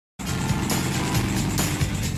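Engine of a pulling tractor running hard as it drags across a dirt track, with music playing over it; the sound cuts in abruptly just after the start.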